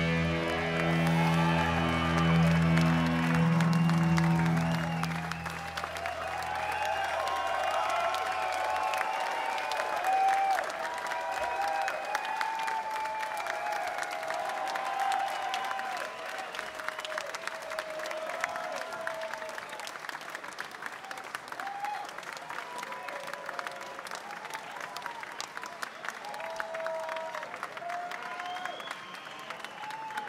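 A rock band's last chord rings on and fades out over the first several seconds, the bass note lasting longest. Then comes a concert crowd clapping and cheering, which slowly thins and grows quieter.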